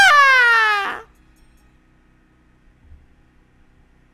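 A man's loud, very high-pitched yell held for about a second, sliding down in pitch, then cutting off.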